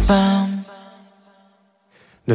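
K-pop song breaking down: the beat stops about half a second in, leaving one held sung note on the word '어젯밤' ('last night') that fades away into a moment of near silence.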